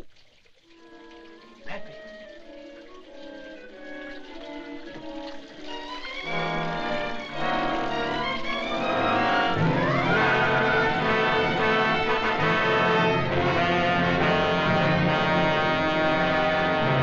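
Orchestral film score that builds from soft held notes to full orchestra. It swells about six seconds in, and a rising run about eight seconds in leads into a loud, sustained passage.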